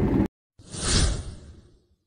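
Car cabin driving noise cuts off abruptly, then a whoosh sound effect swells and fades away over about a second.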